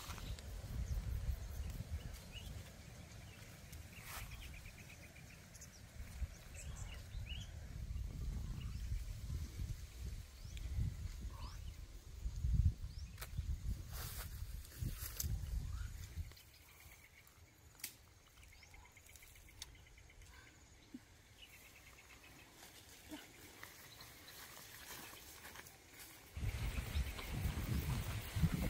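Outdoor rural ambience: rustling and occasional sharp snaps of plants being handled, over a low rumble that drops away a little past halfway and returns near the end, with faint chirping trills now and then.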